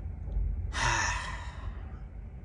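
A man's heavy sigh: one long breath out, about a second long, starting just under a second in.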